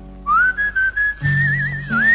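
Instrumental intro of a karaoke backing track. A held chord fades out, then a high, pure-toned lead melody slides in about a quarter second in and wavers with vibrato over a repeating shimmering percussion pattern.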